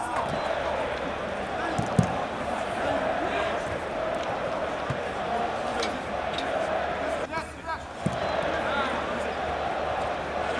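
A football kicked about on an artificial-turf pitch: a few dull thuds of the ball, the sharpest about two seconds in, over players' calls and shouts.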